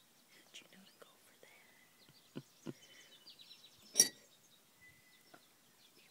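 Soft wet clicking and licking of a chipmunk eating ice cream inside a ceramic mug, with a few sharper ticks. About four seconds in comes one loud, ringing clink as the metal spoon in the mug knocks against the ceramic.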